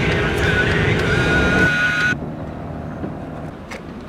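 Car engine noise with a loud, wavering high tone that cuts off suddenly about two seconds in. A quieter, steady low engine rumble with a few faint clicks is left.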